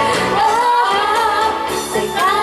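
A woman and a man singing a Japanese pop duet into microphones over a karaoke backing track, amplified through the bar's PA.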